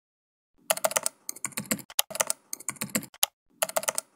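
Typing on a computer keyboard: bursts of rapid key clicks starting about half a second in, with brief pauses between the bursts.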